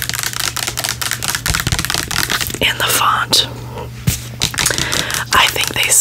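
Long acrylic fingernails tapping and scratching on a plastic pump bottle of hair conditioner: many rapid light clicks, close to the microphone, over a steady low hum.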